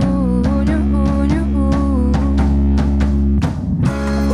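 Live pop-rock band playing: a female lead vocal sung into a handheld microphone over electric guitar, keyboard and drums, with a steady beat.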